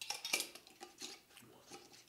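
Light clicks and clinks of small containers and packaging being handled in the hands, about five separate taps spread through.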